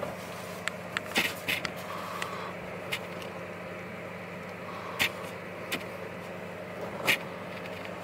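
Steady low background hum with a scattering of short, sharp clicks and crinkles, about six in all, from gloved hands handling a leathery ball python egg and its opened shell flap.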